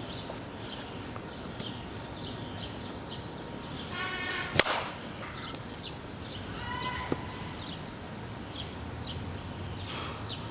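A bat strikes a pitched ball with one sharp crack about halfway through. A fainter knock follows a couple of seconds later, and birds chirp in the background.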